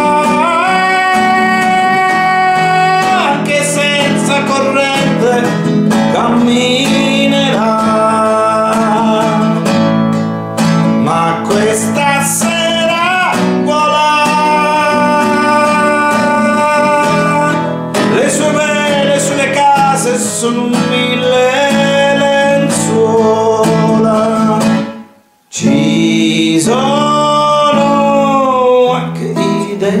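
A man singing in Italian to his own strummed and plucked classical guitar. The sound cuts out suddenly for about half a second near the end, then the song picks up again.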